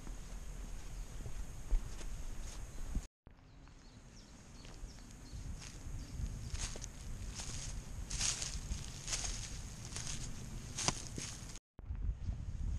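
A hiker's footsteps on a path, turning to irregular steps through dry leaf litter that grow louder in the second half. The sound cuts out completely twice, briefly, about three seconds in and near the end.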